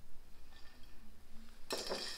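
Metal bar spoon stirring in a cocktail shaker, clinking and rattling against the ice, starting near the end.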